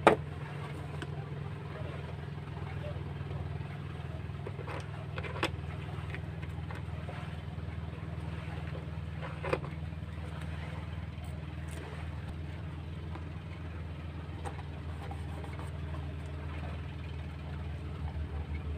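A steady low hum throughout, with a few light taps and rustles from a ribbon-tied kraft cardboard box being handled and a label sticker being peeled and pressed on; the sharpest clicks come right at the start, about five seconds in and about nine and a half seconds in.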